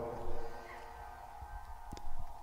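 Quiet stretch of an experimental techno/dubstep track: a faint low rumble, with the echoing tail of a spoken vocal sample fading out about half a second in.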